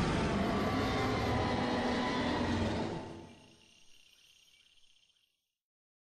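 A steady, deep rumbling background ambience that fades out about three seconds in, leaving faint high chirping that dies away to silence shortly before the end.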